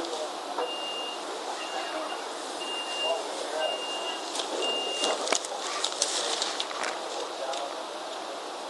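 Playback through a Sony voice recorder's small speaker of a recording made aboard a trolley: five evenly spaced high electronic beeps, about one a second, then a sharp knock and a few seconds of scattered clicks and knocks over background noise.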